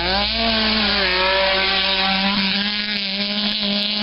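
Rally car engine held at high revs as the car comes flat out down a gravel stage, its pitch climbing in the first moments and then staying high and steady with small dips.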